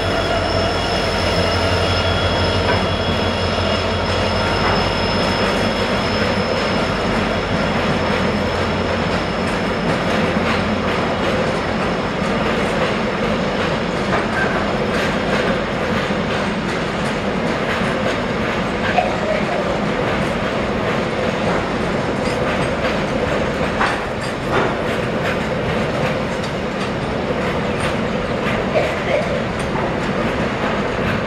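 WDG-4D (EMD JT46ACe) diesel-electric freight locomotive passing close by, its 16-cylinder two-stroke engine rumbling and fading out over the first ten seconds, with a thin high whine at first. A long rake of loaded container flat wagons then rolls past with steady wheel-on-rail noise and scattered clicks over rail joints.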